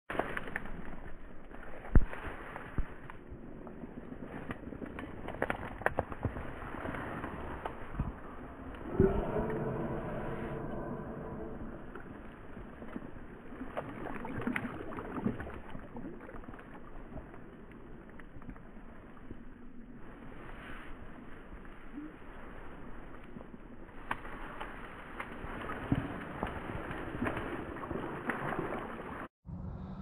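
A hooked chub splashing and thrashing at the river surface close to the bank as it is played to a landing net, with irregular knocks and rustles of close handling; one louder sudden splash or knock about nine seconds in, followed by a brief pitched hum.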